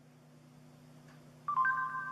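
Google voice search's end-of-listening chime from the phone's speaker: two short electronic tones, the second higher, about one and a half seconds in. It signals that the spoken query has been captured. A faint steady hum sits underneath.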